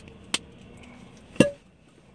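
Small clicks from an expandable cigar tube being handled and pulled open, with one sharp click about one and a half seconds in.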